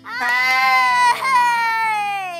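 A person's voice holding one long, loud drawn-out note, the pitch nearly steady with a brief catch about a second in, then sliding down as it fades.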